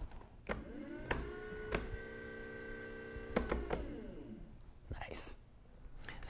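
Small electric trolling motor switched on with a click, spinning up to a steady whine, running about two seconds, then clicked off and winding down. A few more light clicks come before and after it.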